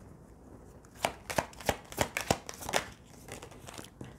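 Oracle cards being shuffled and drawn from a deck on a tabletop: a quick run of sharp card clicks and snaps starting about a second in, dying away into soft rustling near the end.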